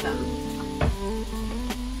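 Green plantain chunks sizzling in hot oil in a frying pan, their first fry for patacones, under background music with held notes. Two sharp ticks sound about a second apart.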